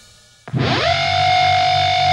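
Heavily distorted electric guitar playing the "elephant" whammy-bar trick. Natural harmonics ring faintly with the volume knob turned down, then swell in about half a second in as the volume comes up. The raised whammy bar bends the pitch sharply upward into a held, trumpeting high note.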